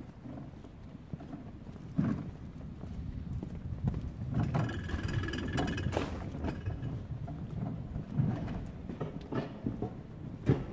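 Footsteps of someone walking on a paved pavement, a run of low knocks. A short higher-pitched sound comes through about halfway.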